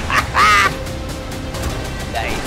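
A man's loud burst of laughter, a few short bursts and then one louder, high-pitched peal about half a second in, over trailer music that carries on steadily afterwards.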